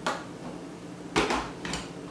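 Plastic knocks and clunks of a food processor's lid being handled and fitted onto its work bowl: a sharp knock at the start, a louder thud just past a second, and a lighter click soon after.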